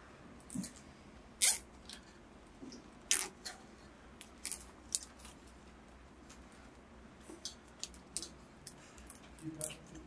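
A large plastic zip tie is fed through and pulled tight around a bundle of e-bike wiring. It makes a series of short, sharp zips and clicks spread over several seconds.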